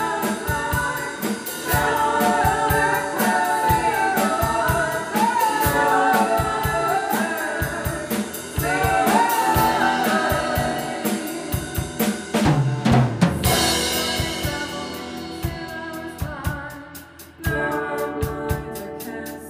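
Live rock duo: a woman singing over electric guitar, with a drum kit keeping a steady beat. The singing stops after about ten seconds, the drums play a fill a little after halfway, and the guitar and drums carry on without the voice.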